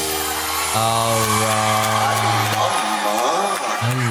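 A male singer holds one long note over a full band backing in a Bollywood-style song, then his voice bends and turns in a quick ornamented run near the end.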